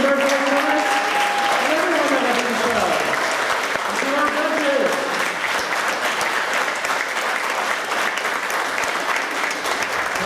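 Audience applauding steadily, with voices calling out over the clapping in the first few seconds.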